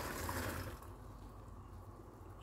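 Cooked azuki red beans and their cooking water poured into a perforated stainless steel colander, the liquid splashing and draining through. The pour tails off within the first second.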